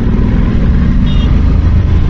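Honda NC750X DCT's parallel-twin engine running under steady throttle as the bike gathers speed, heard together with wind and road rush on the microphone.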